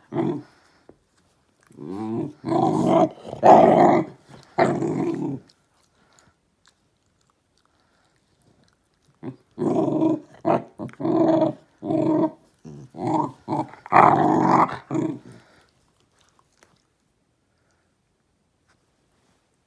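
Small dogs growling as they play-fight, in short growls: one spell a couple of seconds in, then a longer run from about nine seconds to fifteen.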